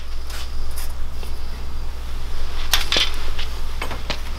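Scattered metallic clanks and clinks from steel go-kart frame tubing and roll cage being handled, over a steady low hum.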